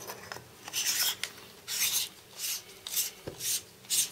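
Metal threads of a Fenix TK35 flashlight's head being screwed onto its body by hand: a run of short dry rasps, one per twist, about two a second, with a light knock a little after three seconds.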